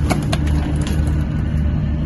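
Ferry's engine running with a steady low drone, with a few short clicks in the first second.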